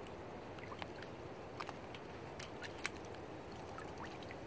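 A muskrat being pulled out of a wire-mesh colony trap lying in water: faint wet handling sounds and a few light clicks from the wire, over a low, steady trickle of water.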